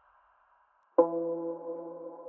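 A single plucked violin one-shot sample on the note E sounds about a second in, with a sharp attack, then rings on and slowly fades.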